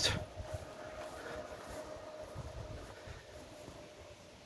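Quiet outdoor background: a low, uneven rumble of breeze on the microphone, with a faint steady hum.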